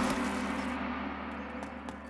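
A large gong ringing out after a hard hit, its several steady tones slowly fading away.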